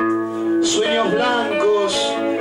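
Live music: a man singing into a microphone over instrumental accompaniment that includes guitar and sustained held notes.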